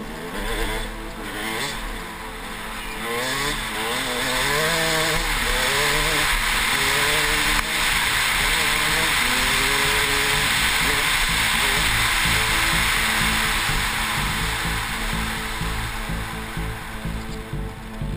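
KTM 200 XC-W two-stroke dirt bike engine revving hard, its pitch climbing and dropping again and again through gear changes over the first several seconds. It is then held at speed under a loud, even rush of wind on the helmet microphone, easing off near the end.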